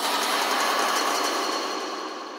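A single harsh, noisy electronic burst with no bass, like a crash or a noise hit. It starts suddenly and fades away slowly, closing a hardstyle track.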